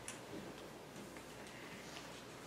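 Quiet room tone with a few faint, irregular ticks and clicks.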